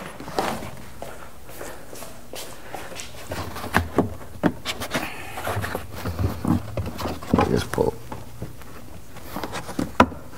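Handling noise from a carpeted trunk side trim panel being pulled and tucked behind plastic trim: felt carpet rustling and rubbing against hard plastic, with scattered clicks and light knocks. It gets busier from about four seconds in.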